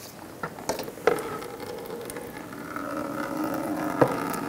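A few sharp clicks as the radiator's plastic drain screw is turned by hand, then engine coolant streams out into a plastic drip pan: a steady pour that rings with a few held tones and grows slightly louder.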